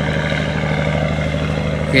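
Boat engine running steadily at sea, a low even drone under a steady hiss of wind and water.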